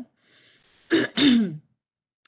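A woman clears her throat: two quick rasping bursts about a second in.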